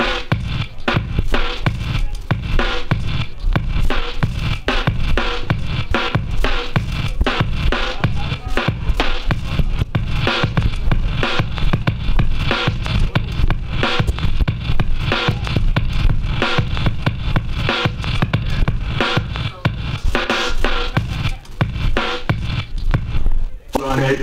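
Turntablist battle routine: records cut and scratched on two turntables through a mixer over a hip-hop beat, with a steady rhythm throughout. The music drops out briefly near the end.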